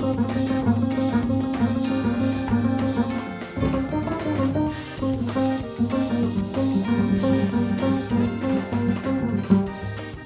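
Jazz music: an upright bass played pizzicato, with a drum kit accompanying.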